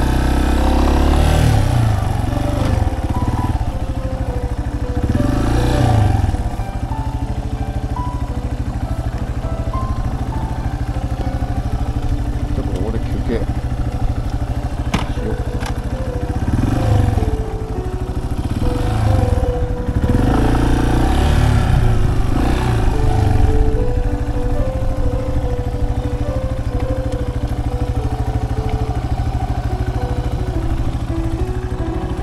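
Yamaha Serow 250's air-cooled single-cylinder engine running at low speed, rising and falling in revs several times, then idling steadily once the bike has stopped. A simple melody of background music plays over it.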